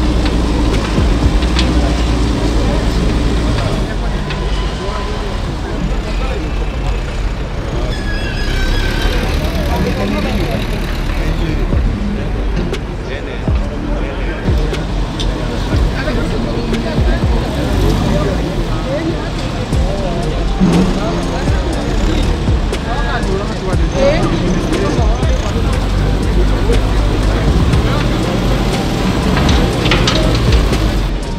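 Excavator's diesel engine running steadily, under the indistinct talk of many voices.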